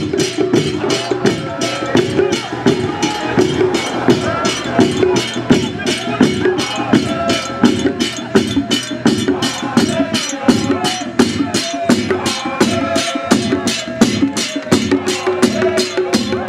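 Hand-held frame drums and cymbals beaten in a steady, fast rhythm, about four strokes a second, with a crowd of voices singing over them.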